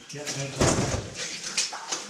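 Scuffing and scraping of loose stones and clothing as a caver shifts and handles rubble in a cramped rock passage, in short noisy bursts.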